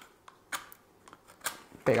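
A wooden match taken from a small cardboard matchbox and struck on its side: a few short scratches and clicks, the sharpest about a second and a half in.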